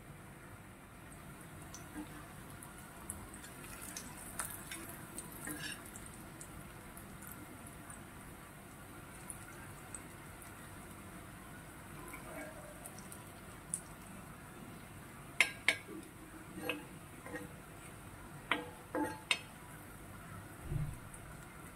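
Raw banana slices frying in shallow oil in a cast-iron pan, a faint steady sizzle. A steel spatula scrapes and taps against the pan a few times, with the sharpest clicks in the last five seconds.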